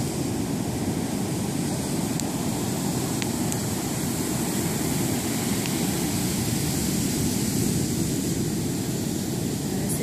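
Ocean surf breaking on a sandy beach: a steady, low rush of waves.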